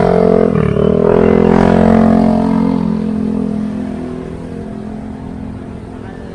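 Yamaha NMAX scooter, its engine built up to 180cc, running and pulling away. Its pitch dips briefly about half a second in, then holds steady while the sound fades over the last few seconds as it rides off.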